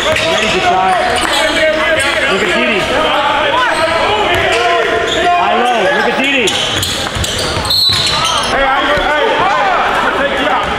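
Live basketball game in a gym: the ball bouncing on the hardwood court, sneakers squeaking, and indistinct voices of players and onlookers.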